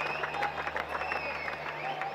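Stadium crowd applauding, many scattered hand claps over a steady crowd hubbub.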